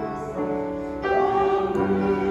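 A hymn being sung by a congregation with keyboard accompaniment, held chords moving to a new chord about a second in.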